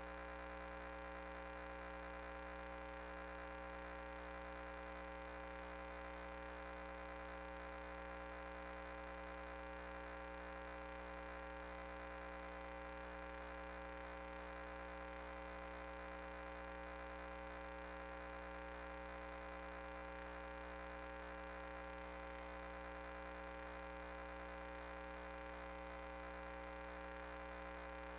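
Steady electrical hum made of several constant tones with a faint hiss above, unchanging throughout.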